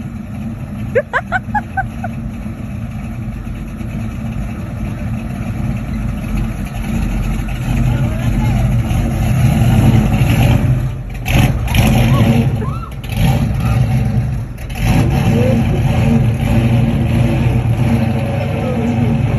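1966 Ford Mustang Fastback's engine running steadily, then speeding up as the car pulls away, loudest about ten seconds in as it passes close by. The engine note cuts out and comes back several times as it accelerates away.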